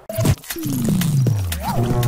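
News channel logo sting: a short burst of music and sound effects that opens with sharp hits, then a long tone sweeping steadily down in pitch over a low steady hum.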